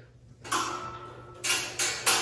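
Wire-basket coffee table with a loose round wooden top being handled and set down. It gives a clatter about half a second in, then two sharp knocks close together near the end.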